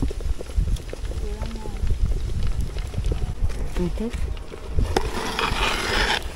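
Wind rumbling on the microphone, with faint distant voices now and then.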